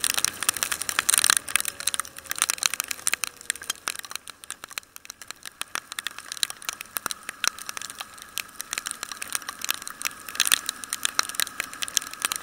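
Rain striking a motorcycle-mounted camera as the bike rides through a downpour: many irregular sharp ticks of drops hitting the housing, over a steady hiss of wet-road and wind noise.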